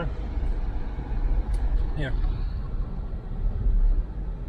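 Steady low road and tyre rumble inside the cabin of a moving electric car, with no engine note.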